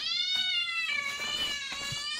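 Angry-cat ringtone playing over a Bluetooth speaker: one long, high-pitched cat yowl that dips slightly in pitch about a second in.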